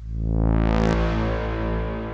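A sustained synthesizer note from Ableton's Operator, played through a blend of a dry chain and a fully wet, long-decay reverb chain. The tone brightens over about the first second, then holds steady.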